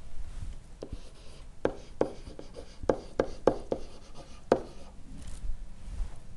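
A stylus writing by hand on a pen-input surface: a string of sharp, irregular taps and short scratches as the pen strikes and lifts while the words are written.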